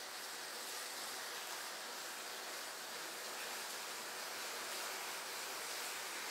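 A large mass of burning matchsticks: a steady, even hiss of flame.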